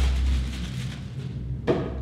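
Low steady rumble with a single sharp knock near the end, as the soft padded flash bag is handled on a tabletop.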